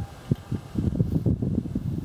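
Wind buffeting the microphone in irregular low rumbling gusts, which come thick and fast from about a second in.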